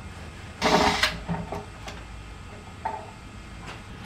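Cordless drill running in one short burst as it backs the screw out of a wooden drawer knob, followed by a few light clicks and knocks on the wood.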